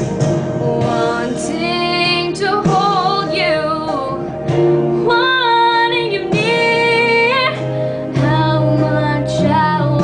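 A young woman singing a slow ballad over a karaoke backing track, holding long notes with vibrato.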